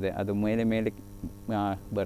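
Steady low electrical mains hum under a man's speech, which breaks off for about half a second near the middle.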